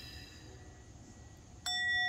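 Small handheld singing bowl struck once with a wooden striker about one and a half seconds in, then ringing on with a clear steady tone and several higher overtones. Before the strike only a faint lingering ring is heard.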